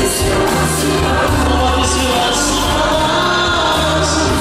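Live pop music at a concert, played loud, with held bass notes changing about once a second and choir-like sung vocals over them.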